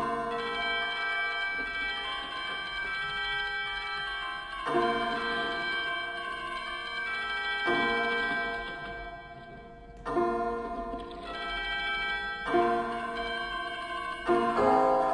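Grand piano playing slow chords, struck about five times a few seconds apart, each left to ring with a bright, bell-like resonance and fade before the next.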